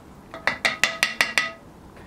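About six quick ringing clinks of a pottery rib knocking against a hard container, in about a second, as the rib is dipped to wet it so it stops sticking to the clay.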